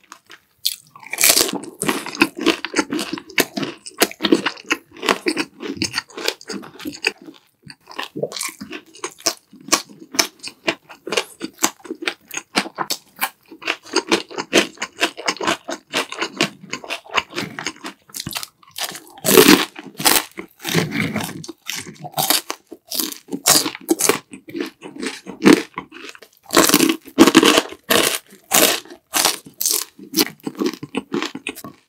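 Close-miked crunching and chewing of crispy deep-fried battered pork (tangsuyuk): dense, irregular crackling bites and chews, with louder bursts of crunching about two-thirds of the way through and again near the end.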